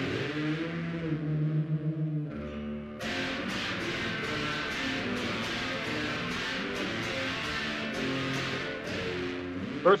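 Electric guitar music. There is a short lull about two seconds in, and about three seconds in it comes back fuller, with a steady run of sharp clicks on top.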